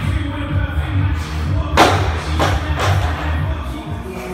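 Background music with a steady beat. About two seconds in, a barbell loaded with bumper plates is dropped from overhead and hits the floor with a thud, then bounces twice.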